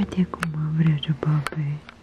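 Speech only: a woman saying a short sentence.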